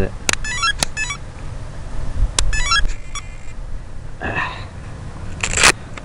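Sharp handling clicks and knocks as a battery plug is worked onto its connector, with two short bursts of buzzy electronic interference. A low wind rumble runs on the microphone.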